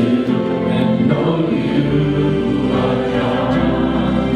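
Live worship music: a church band with voices singing long held notes, the bass filling in about halfway through.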